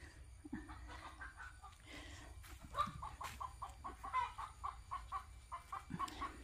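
Faint animal calls: a run of short, repeated calls that starts about a second in and comes more thickly in the second half, over a low steady hum.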